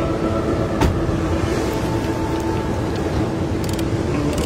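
Cinematic commercial soundtrack: a sustained drone of held tones over a dense low rumble, with a sharp click about a second in and a few quick clicks near the end.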